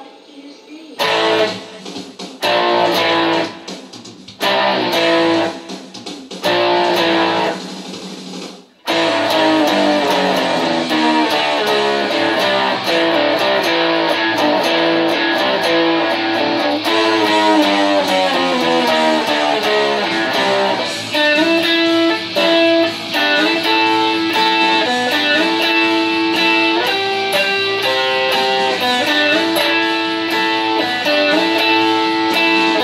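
Electric guitar playing a rock riff: short stabs of notes with gaps between them for the first several seconds, then continuous playing from about nine seconds in, with a run of notes stepping down in pitch and then a repeating riff.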